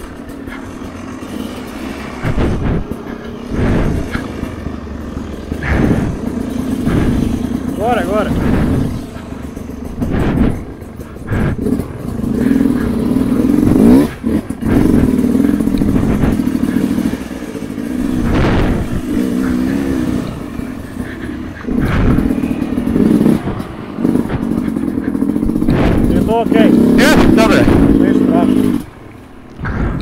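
Two-stroke enduro dirt bike engine running under riding load on a rough trail, its note rising and falling with the throttle, with knocks and rattles from the bike over bumps. The engine drops away sharply about a second before the end.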